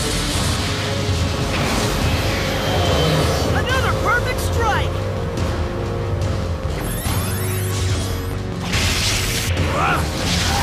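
Dramatic background music in a cartoon battle soundtrack, with blaster and whoosh sound effects. Several swooping tones sound around the middle.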